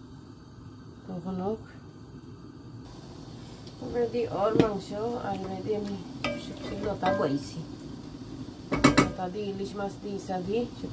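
Wooden spoon stirring curry in a cooking pot, clattering and scraping against the pot, with a few sharp knocks just before the end that are the loudest sounds.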